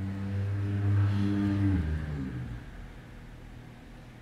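A woman humming one long, low, steady note that dips in pitch and fades out a little past halfway.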